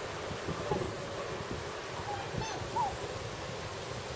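A few short, faint bird calls that slide up and down in pitch, clustered a little after the middle, over a steady hiss of wind and water.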